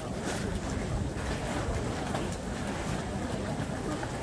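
Wind rumbling on the microphone over a steady outdoor background hiss, with a few faint clicks.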